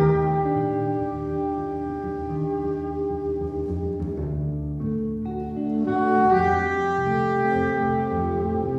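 Live jazz trio: saxophone playing long, sustained melody notes over double bass and guitar. The saxophone drops out about four seconds in and comes back about a second later.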